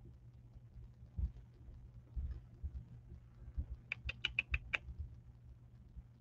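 A quick run of six sharp clicks, about seven a second, of the kind made at a computer desk, near the end. A few soft low thumps come before them, over a steady low hum.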